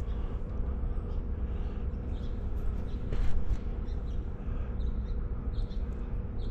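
Steady outdoor background: a low rumble with a faint steady hum running under it, and a few faint short high chirps.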